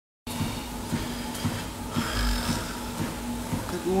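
Steady motor hum with regular footfalls about two a second: someone walking on a treadmill. A man's voice starts at the very end.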